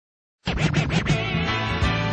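Hip-hop instrumental starting about half a second in with turntable scratching, quick back-and-forth pitch sweeps, then settling into a steady bass tone and beat.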